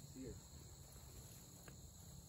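Near silence with a faint, steady high-pitched drone of insects.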